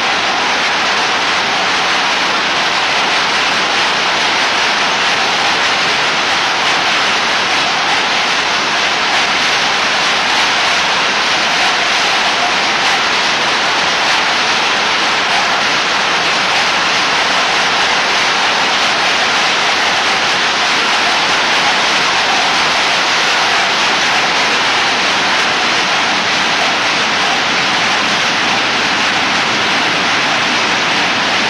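Rows of textile mill machinery running together: a loud, steady, even din with no break or rhythm.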